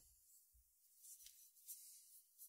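Near silence, with a few faint handling sounds as the ceramic lid is lifted off a salt dish: a soft low knock, then a light click.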